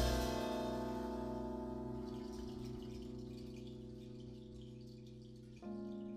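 A jazz trio's held chord on stage piano after a final drum hit, ringing and slowly fading for several seconds while a cymbal shimmers out. Near the end the piano starts a new phrase of single notes.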